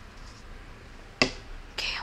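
A single sharp click about a second in over quiet room hiss, followed near the end by the start of a boy's voice.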